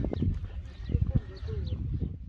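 Indistinct voices over steady low outdoor background noise.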